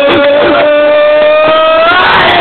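A young man's voice holding one long, high, loud "oooooh" of anticipation, rising slightly near the end, as the ball is about to be thrown.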